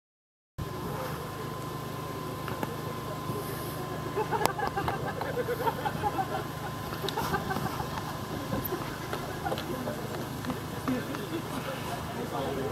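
Outdoor ambience on a busy mountain summit: faint voices of people chatting over a steady low hum, with a few light clicks.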